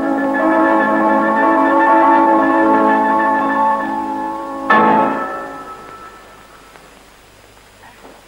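Ballet music playing held chords, then a loud struck final chord about four and a half seconds in that rings and fades away.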